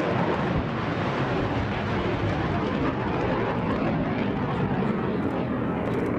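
Rocket motor of a Patriot surface-to-air missile at launch: a steady rushing noise that holds at an even level with no break.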